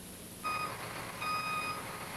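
Dump truck's backup alarm beeping as the truck reverses, signalling that it is in reverse. Two steady single-pitched beeps, each about half a second long and about a second apart.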